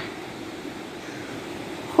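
River rapids rushing steadily, an even hiss.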